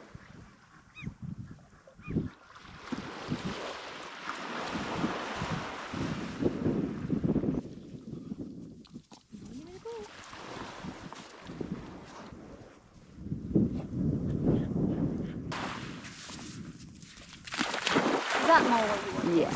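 Gusty wind and small waves washing onto a sandy beach, with a few short honking calls.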